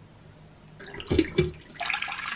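A bathroom basin tap being opened, with two soft knocks from the handle, then water running steadily from the tap into a porcelain sink, starting near the end.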